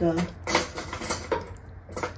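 Metal forks clattering as they are picked up: a brief rattle about half a second in, then a single click.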